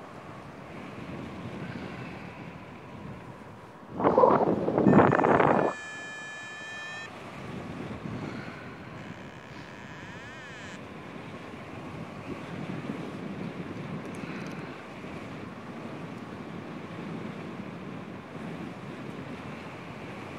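Wind rushing over the camera microphone of a paraglider in flight, with a loud buffet of wind about four seconds in. A brief high, steady electronic tone sounds around six seconds.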